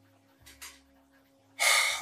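A man's short, sharp intake of breath through the mouth just before he speaks again, near the end, with a faint mouth click about half a second in.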